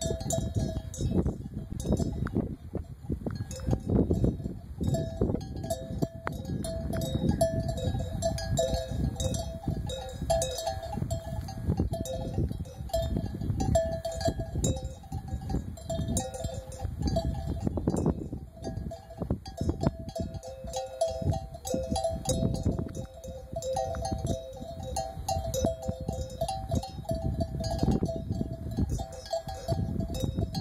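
Bells worn by a grazing flock of sheep, clanking irregularly and unevenly as the animals move and feed, over a low, uneven rumble.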